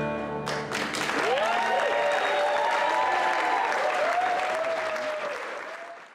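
The last chord of acoustic string music rings out briefly, then an audience breaks into applause with whooping cheers. The applause fades away near the end.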